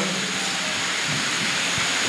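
Steady hiss-like background noise of a large hall through a microphone and PA, with a faint low steady hum.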